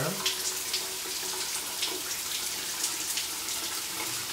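Shower water running steadily, a continuous hiss of spray, with faint short scrapes of a razor being drawn over shaving cream on the face.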